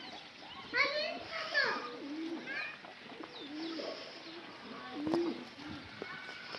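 Bugti pigeons cooing: a series of low coos that rise and fall, with a cluster of higher calls about a second in.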